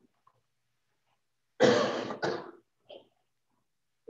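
A person coughing twice in quick succession, a sharp loud cough about one and a half seconds in followed at once by a shorter second one.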